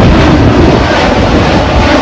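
Jet airliner passing low overhead just after takeoff, its engines making a loud, steady rushing noise.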